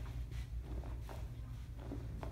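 Faint rustles and soft taps from a person doing crunches on a foam exercise mat, a few in the space of two seconds, over a steady low hum of room tone.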